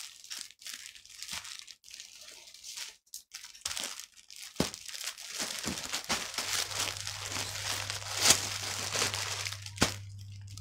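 Plastic packaging crinkling and rustling as a tied bundle of clothes is pulled open and unwrapped, with scattered sharper crackles. A low steady hum comes in past the middle.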